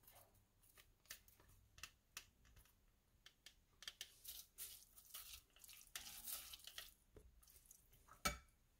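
Faint, scattered soft squishes and scrapes of a silicone spatula stirring a wet mix of grated zucchini, tuna and chopped parsley in a glass bowl, coming more often in the second half.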